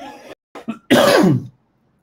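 A man coughing: a short throat sound at the start, then one loud cough about a second in, lasting about half a second.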